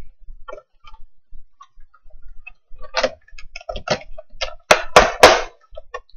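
Someone chewing and eating a brownie close to the microphone: irregular wet clicks and smacks, with a few louder bursts about five seconds in.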